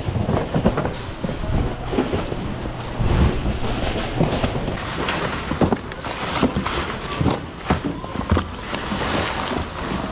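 Rummaging through a bin of returned merchandise: cardboard boxes and plastic-wrapped packages being shifted and knocked together, with many irregular knocks and rustles.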